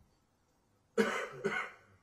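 Near silence, then about a second in a single short cough, as loud as the speech around it.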